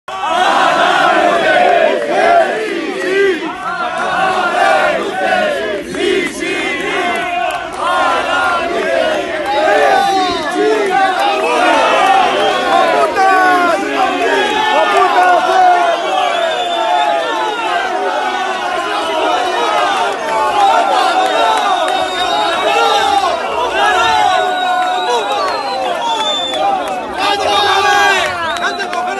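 A crowd of protesting workers, many voices shouting at once, loud and unbroken.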